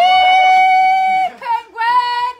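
A high-pitched voice holding a long, steady sung note for over a second, then, after a short break, a lower held note that slides down as it ends.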